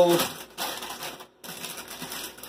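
Foil snack-chip bags (Sun Chips) crinkling as they are handled and set aside, in two stretches with a short break in the middle.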